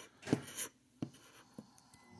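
Plastic scratcher scraping the latex coating of a scratch-off lottery ticket in one short stroke, followed by a couple of light clicks or taps.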